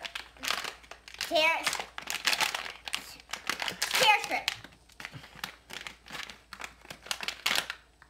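Plastic-foil Squish Dee Lish blind-bag packet being torn open and handled, crinkling in a continuous run of sharp crackles.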